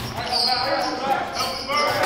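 Basketball practice in a reverberant gym: a ball hits the hardwood floor at the start, and sneakers squeak on the court in two high-pitched stretches, with players' voices faint underneath.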